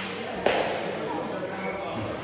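A single sharp kick of the shuttlecock by a player's foot about half a second in, ringing briefly in the large sports hall, over background chatter.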